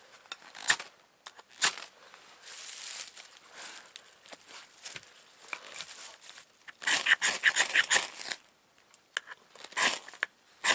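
A ferro rod struck with the spine of a knife over a dry tinder bundle to throw sparks into it: single sharp scrapes about a second and two seconds in, a quick run of scrapes from about seven seconds to eight, and one more just before the end.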